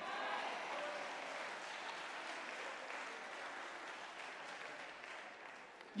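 Church congregation applauding in response to the sermon, the clapping slowly dying away over several seconds.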